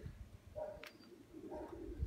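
Domestic pigeons cooing faintly, with a single sharp click a little before the middle.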